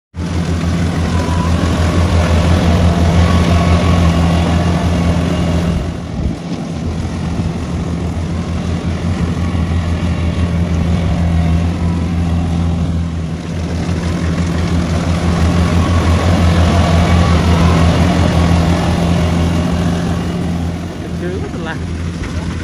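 Kubota rice combine harvester's diesel engine running steadily under load while it cuts and threshes rice: a loud, deep, even drone. It dips briefly about six seconds in and again near thirteen seconds.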